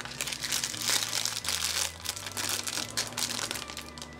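Small plastic wrapper packets crinkling continuously and irregularly as they are handled and opened by hand.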